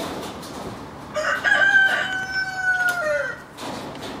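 A rooster crowing once: a few short notes, then one long held call that falls away at the end.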